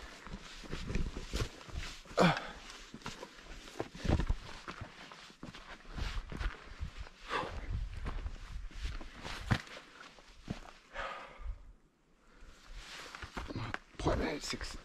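Footsteps of someone walking over a steep slope of dry grass and loose stones, irregular crunching and rustling of the vegetation underfoot, with a short lull near the end.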